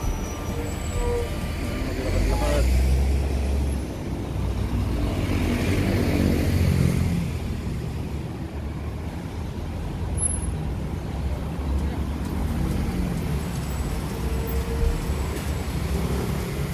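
City street traffic: buses and cars driving past on the road beside the pavement. A deep engine rumble swells about two seconds in, and a passing vehicle's noise rises and fades around the middle.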